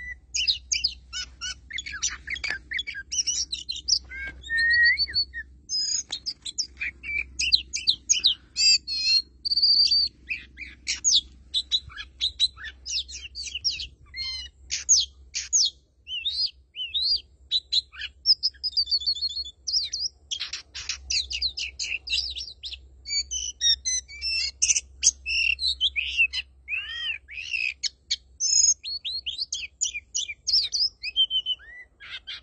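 Male Oriental magpie-robin singing without pause: a fast, ever-changing run of clear whistles, slurred up-and-down notes and quick chattering phrases.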